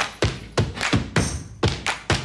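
Percussive segment-intro stinger for a radio show: a quick series of heavy thuds, about three a second, with a little music.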